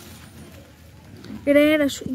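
Quiet outdoor background for about a second and a half, then a person's voice speaking near the end.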